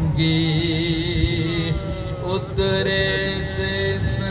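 Men chanting a soz-o-salam elegy, amplified through a loudspeaker system: long held, slowly wavering vocal notes over a steady low drone, with a brief break about halfway through.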